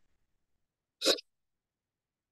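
A single short vocal sound from a person, a fraction of a second long, about a second in, against otherwise near silence.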